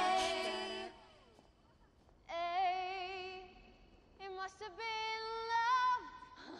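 Women's a cappella group singing together, cutting off about a second in. After a short pause, a single woman's voice sings unaccompanied in two phrases of long held notes with a light vibrato.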